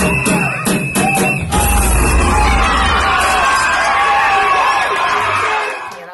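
Dance music with a beat playing for a live stage dance routine, with an audience cheering and whooping over it. The beat drops out about a second and a half in, leaving mostly crowd cheering, which fades near the end.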